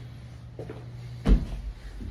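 Footsteps on carpeted stairs: dull thuds about half a second apart, with one heavy, deep thud about a second in, over a steady low hum.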